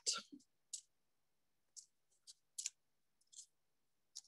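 Knitting needles clicking faintly as stitches are worked: about half a dozen soft, irregular clicks.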